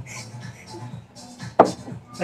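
A glass bottle knocked once against a table, a single sharp clunk about one and a half seconds in, over quiet background music.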